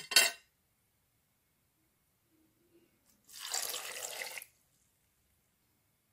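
Blended green juice being poured into a glass mug, a liquid rush lasting about a second, just after a brief sharp sound at the very start.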